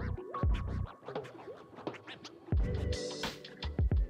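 Background music with a heavy bass beat and sliding, scratch-like sounds.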